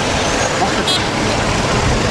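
Steady outdoor rumble and hiss of the kind road traffic makes, under a few spoken words, with a brief high chirp about a second in.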